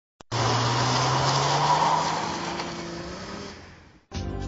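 A car's engine and tyre noise that comes in suddenly and fades away over about three seconds, with a steady low hum under a loud hiss.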